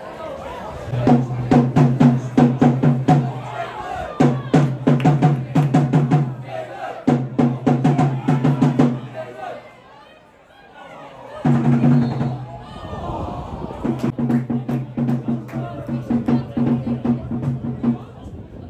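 Drumming in fast runs of hits, each run lasting about two seconds, with voices over it; it drops away briefly about ten seconds in, then comes back.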